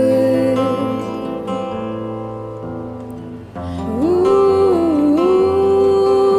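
Live acoustic indie-folk music on two acoustic guitars: a strummed chord rings and fades over the first few seconds. Then, a little past halfway, female voices come in, glide up and hold a long sung note that dips briefly and returns.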